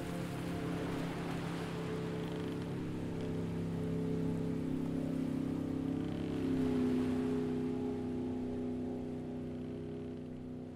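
A song's closing chord held and slowly dying away, with a hiss like falling rain over it in the first few seconds.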